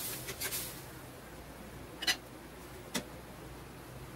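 Metal spatula stirring diced potatoes through menudo sauce in a frying pan, with brief scraping in the first second. Then a faint steady hiss of the pan simmering, broken by two sharp clicks about a second apart.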